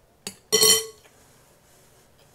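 Metal spoon clinking against a glass bowl: a light tap, then a louder clink that rings briefly about half a second in.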